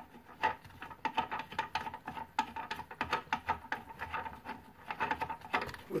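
Plastic toilet-seat mounting nut being unthreaded by hand from under the bowl: a run of quick, irregular clicks and scrapes of plastic threads and gloved fingers.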